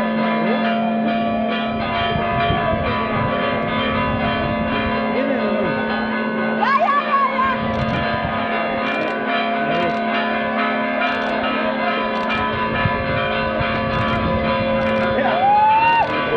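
Bells ringing continuously in a dense, sustained peal, with a few voices shouting over them, about seven seconds in and again near the end.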